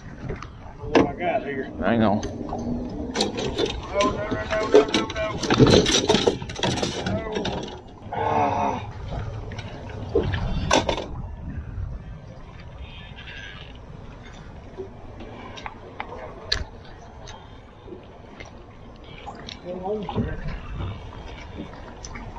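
Indistinct talk in a small fishing boat, with scattered sharp clicks and knocks from handling rods, line and a landed fish; it quietens in the second half.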